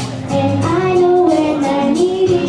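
A young girl singing a melody into a handheld microphone over a backing track, a new phrase beginning about half a second in.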